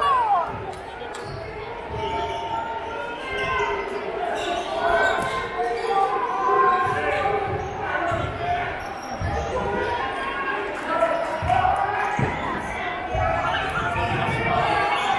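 Basketball bouncing on a hardwood gym floor during play, irregular thumps among the talk of a crowd of spectators, echoing in a large gymnasium.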